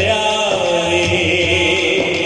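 Amplified male voice singing a manqabat, a Sufi devotional song, holding long drawn-out notes that bend slowly in pitch, with musical accompaniment behind.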